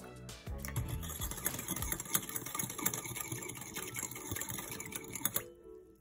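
Wire whisk beating a thin soy sauce and vinegar dressing in a glass bowl: a fast, continuous clatter of metal tapping on glass that stops abruptly about five and a half seconds in.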